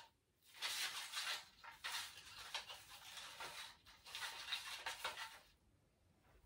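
Soft rustling of artificial pine branches and scraping of floral wire, in a string of short bursts, as wire is wrapped around a branch to fix a large bauble into the tree. It stops shortly before the end.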